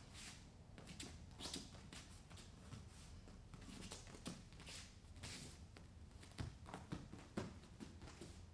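Faint, irregular light thuds and scuffs of bare feet landing and pushing off on training mats during fast forward shuffle hops.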